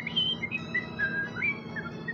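Someone whistling a short tune: a run of clear single notes that step up and down in pitch, each held briefly.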